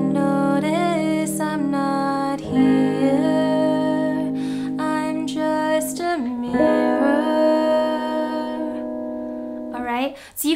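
Clean electric guitar (an Epiphone Les Paul with a capo on the third fret) played with single down strums, each chord left to ring, moving from C7 to F; new chords are struck about two and a half and six seconds in. A woman's voice sings the melody softly over the guitar.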